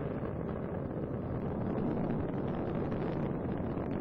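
Space Shuttle Endeavour's twin solid rocket boosters and three main engines during ascent, heard as a steady, even rumble of rocket exhaust noise.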